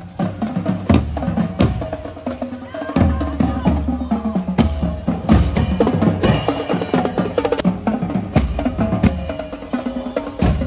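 Marching drumline playing: bass drum, snare drums and hand-held crash cymbals keep a steady beat, with repeated loud accented hits.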